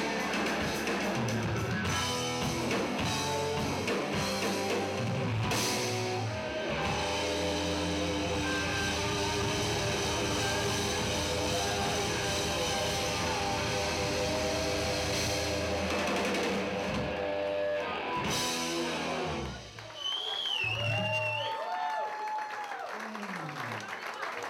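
Live rock band, electric guitar, bass and drum kit, playing the closing bars of a song that stops about four-fifths of the way through. The audience then cheers, with a whistle and shouts.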